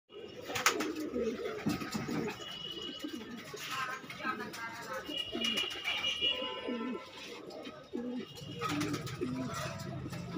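Several caged Punjabi pigeons cooing over and over, their low calls overlapping one another. There is a sharp click just under a second in, and a low hum joins in near the end.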